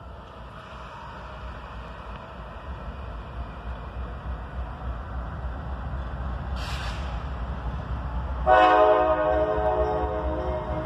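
Approaching CSX diesel locomotive, its low rumble growing steadily louder. About eight and a half seconds in, its air horn sounds a loud, held chord.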